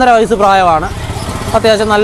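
Speech: a voice talking, with a short break about a second in.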